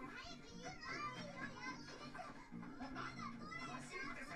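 Faint anime soundtrack: quick dialogue in Japanese with a high, childlike girl's voice, over steady background music.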